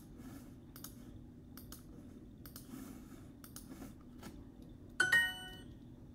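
Clicks as word tiles are tapped in a language-learning app, then about five seconds in a short bright chime of several ringing tones sounding together, the app's answer chime.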